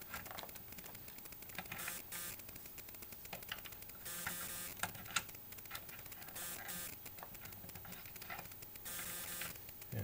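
Quiet, irregular clicks and rustles of test leads being handled, with banana plugs pulled from and pushed into a bench power supply's binding posts.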